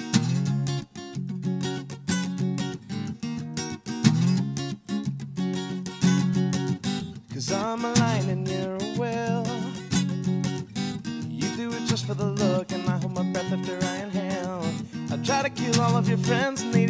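Acoustic guitar strummed steadily in chords, an instrumental passage between sung lines of a slow song.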